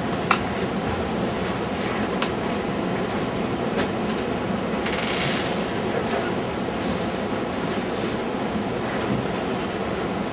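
Steady, low, rumbling mechanical room hum, like a ventilation or projector fan, with a few small clicks scattered through it.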